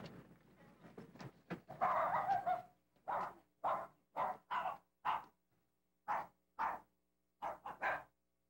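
Small dog barking: a denser burst about two seconds in, then about ten short barks in quick runs of two or three.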